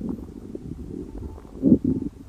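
Bowel sounds heard through a stethoscope pressed on the abdomen, low and irregular, with a louder one near the end: positive, i.e. present, bowel sounds.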